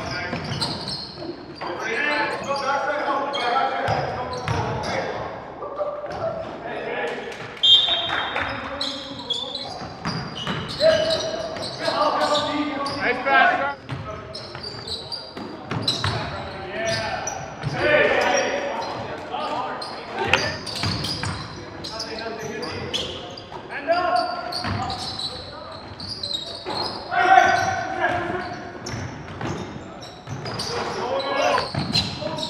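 Basketball game on a hardwood gym floor: the ball bouncing in repeated sharp knocks, with players' indistinct voices calling out, echoing in the hall.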